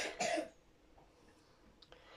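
A short breathy vocal sound from a woman, two quick noisy bursts in the first half-second. Then near silence, with a faint click shortly before the end.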